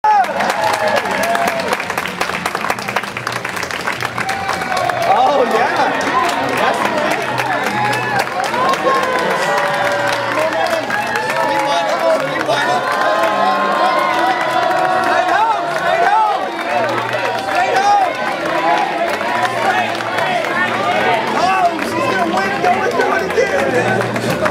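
A crowd cheering, shouting and clapping without a break, many voices at once over steady hand-clapping.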